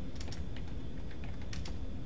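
Keys tapped on a computer keyboard while a password is typed, about half a dozen sharp, unevenly spaced clicks over a steady low hum.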